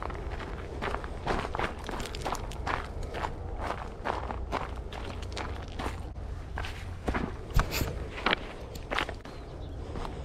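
Footsteps crunching on a gravel and crushed-rock path at a steady walking pace, with one sharper knock about three-quarters of the way through.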